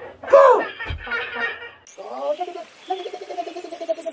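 A voice calls out, with a short low thump about a second in; from about halfway through, a high, quickly pulsing laugh.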